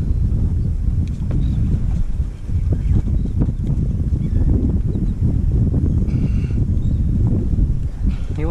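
Wind buffeting the camera's microphone on open water: a loud, uneven low rumble that runs on steadily.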